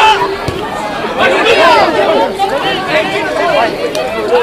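Several voices shouting and calling over one another, continuously, as open play goes on in a rugby match.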